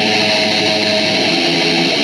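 Rock band playing live, loud and steady: electric guitars over bass guitar and drums.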